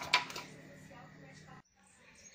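A woman's speech trailing off, then faint steady room tone with a low hum, broken off abruptly by an edit about one and a half seconds in.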